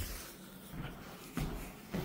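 Footsteps going down a staircase, with a couple of soft thuds in the second half.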